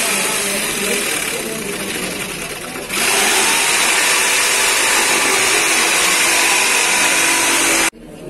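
Loud, steady machine-like noise with voices underneath. It dips a little between about one and three seconds in, swells again, and cuts off abruptly just before the end.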